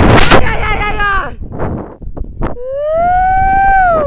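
Rope jumper yelling wordlessly while swinging on the rope, with wind rushing over the microphone during the first second. About two and a half seconds in comes one long yell that rises, holds and falls in pitch.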